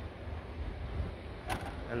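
Power tailgate of a Mercedes-Benz GLS SUV closing under its motor: a low steady hum, then a sharp click about one and a half seconds in as it latches shut.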